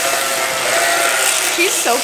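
A sheep bleating in one long, steady call over the continuous buzz of electric sheep-shearing clippers cutting through a fleece.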